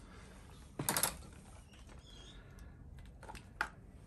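Handling noises of a plastic-bodied hedge trimmer and a clip-on spark checker: a short clatter about a second in as the trimmer is set down on brick pavers, then a few light clicks near the end.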